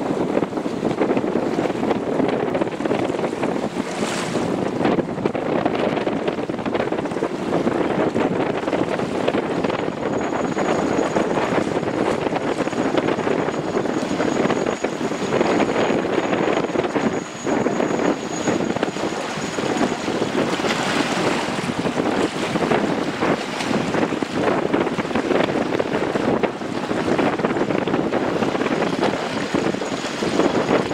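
Steady wind buffeting the microphone, over choppy harbour water sloshing against the pontoon.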